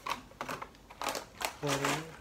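Plastic snack packaging being picked up and handled, crinkling with a run of small clicks and taps, loudest about a second in. A short hummed vocal sound comes near the end.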